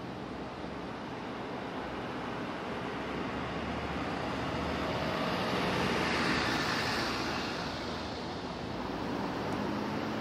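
City street traffic noise, swelling as a vehicle passes about six seconds in, then fading.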